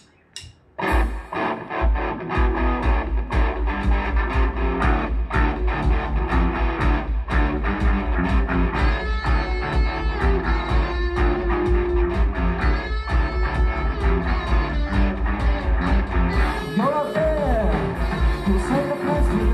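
Live rock band of electric guitars, bass guitar and drum kit playing an instrumental intro, coming in suddenly about a second in with a steady driving beat. Cymbals grow louder near the end.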